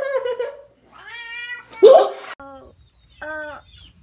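A domestic cat meowing repeatedly, several meows in a row, the loudest about two seconds in.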